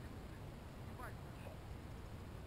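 Faint, distant shouts from soccer players across an open field, a short call about a second in, over a steady low rumble.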